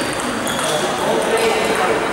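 Table tennis ball clicking with a short ping off bat and table, over the chatter of a busy sports hall.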